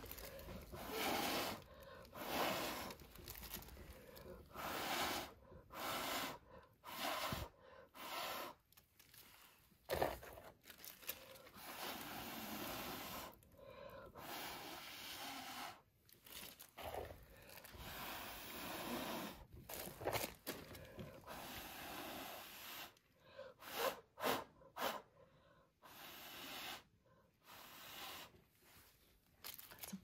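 A long series of short, faint puffs of breath blown by mouth across wet acrylic paint, each under a second, with brief pauses between them, pushing the paint out into a bloom.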